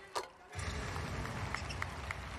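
Basketball arena ambience: a short knock near the start, then a low crowd murmur that comes up about half a second in, with brief sneaker squeaks on the hardwood court as the players move.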